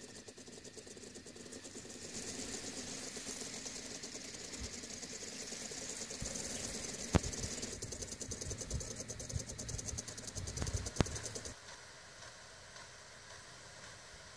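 Outdoor field ambience: a steady, high-pitched, fast pulsing buzz with a few sharp clicks, which drops to a quieter hiss near the end.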